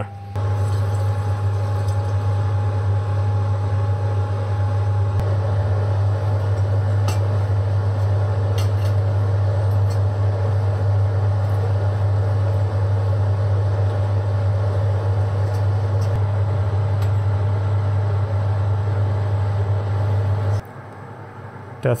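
A steady low machine hum with a rushing noise over it, like a motor or pump running, with a few faint clicks. It cuts off suddenly near the end.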